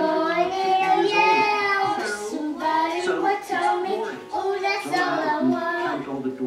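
A young girl singing, a continuous wordless vocal line with held, bending notes and a couple of short breaks.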